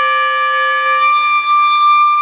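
Concert flute sounding a held multiphonic, several tones at once. About a second in, the lower tones fade out, leaving a single steady high note: one note of the multiphonic held on its own.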